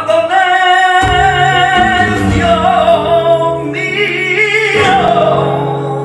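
Male flamenco singer (cantaor) singing a long, wavering, ornamented line of a cante de las minas (minera / cartagenera), with flamenco guitar notes sounding under the voice from about a second in.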